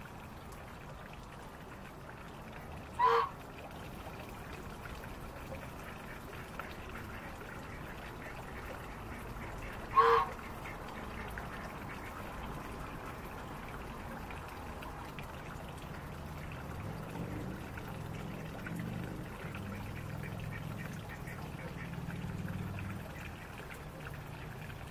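Domestic goose giving two short, loud honks, about three seconds and ten seconds in, over a steady background hiss.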